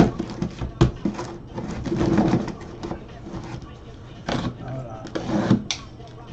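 Corrugated cardboard boxes being handled: a few sharp knocks and scrapes about a second in and again in the last two seconds, over a faint steady low hum.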